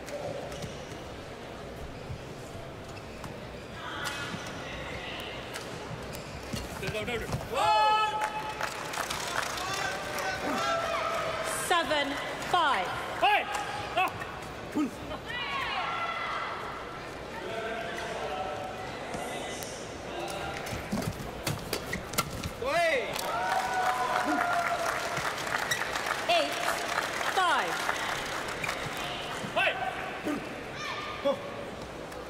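Badminton play sounds: scattered sharp shuttlecock hits and curved squeaks of shoes on the court mat, mixed with crowd voices shouting and calling out in a large hall.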